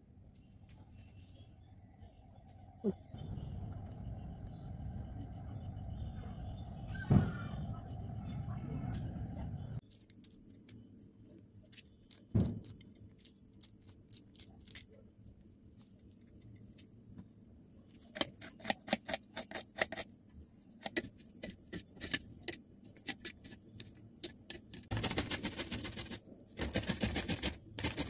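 Hand food preparation in three parts. Rumbling handling noise with a few knocks comes first. Then a run of sharp clicks as a green chilli is sliced with a small knife over a steel plate. Near the end, fast rasping strokes as a carrot is rubbed on a perforated steel grater.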